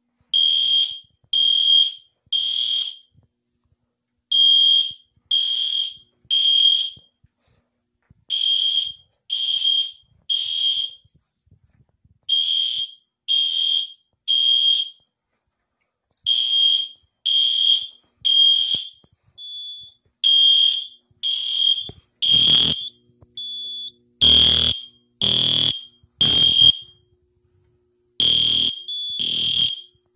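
EST Genesis weatherproof fire alarm horn sounding the temporal-3 evacuation pattern: three half-second blasts, a pause, then repeat, about every four seconds. Near the end the blasts turn rough and harsh, and a few short single beeps come between the groups.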